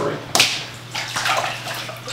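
Paper prints being sloshed and dunked by hand in a tray of wash water, with a sharp splash about a third of a second in, then lighter splashing.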